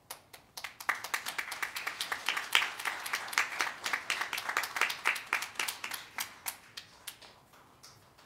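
A small crowd applauding, the separate claps easy to pick out. It starts with a few claps, swells to steady clapping within the first second, holds for several seconds, and then thins out and dies away near the end.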